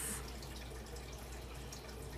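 Faint, steady background noise: a low hum under an even hiss, with no distinct event.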